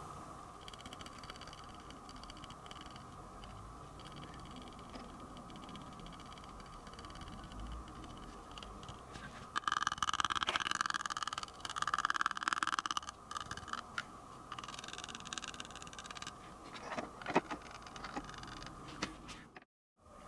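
Fine scenic scatter (tile grout and earth blend) being sprinkled onto a model canal bed: a dry rustle of falling grains for about three seconds around the middle, over a faint steady hum, with a couple of small clicks later on.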